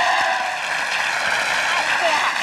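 Studio audience clapping and cheering: a steady, dense wash of applause with a few voices calling out.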